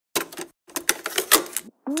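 Intro sound-effect sting: two quick runs of sharp, clattering clicks, then near the end a voice's rising "whoop".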